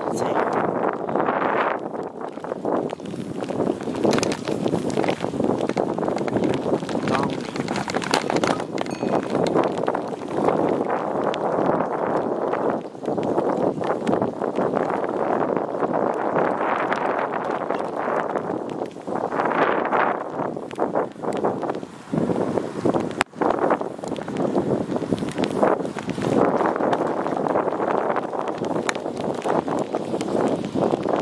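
Wind buffeting a handheld camera's microphone while riding a bicycle: a loud, uneven rush of noise with rattles and knocks from handling.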